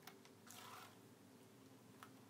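Near silence: quiet room tone, with a faint click at the start and a faint soft hiss about half a second in.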